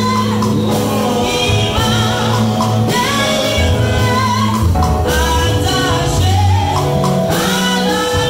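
A woman singing a gospel song into a microphone, her voice amplified, with held melodic lines. An electronic keyboard accompanies her with sustained low bass notes.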